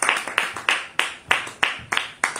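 Hands clapping in applause, in a steady even rhythm of about three claps a second.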